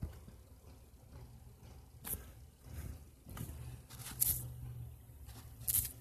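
Faint, scattered handling noises near the microphone: soft rustles and a few sharp clicks, the loudest about four seconds in and near the end, over a low steady hum.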